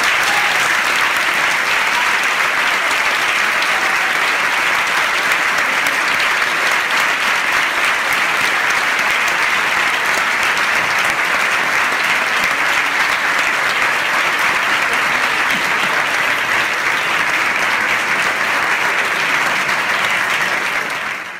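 Sustained, dense applause from a hall audience and the cast on stage clapping, steady and loud without a break.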